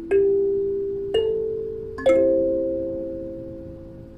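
Kalimba (thumb piano) being played slowly: three plucked chords about a second apart, each ringing and fading, the last left to ring out quietly.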